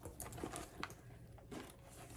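A white Loungefly faux-leather backpack being handled by its straps: faint rustling with a few light clicks, about three in the first second.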